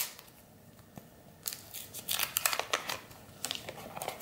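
Waxed-paper wrapper of a 1990 Wacky Packages sticker wax pack being torn and peeled open by hand: a run of crackling rips and crinkles starting about a second and a half in.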